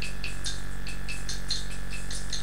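A hand rattle shaken alone in a steady rhythm, about five strokes a second, over a steady low hum.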